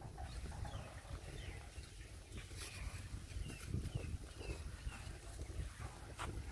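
Faint short chirping calls from birds, several spread unevenly over a few seconds, over a low steady rumble.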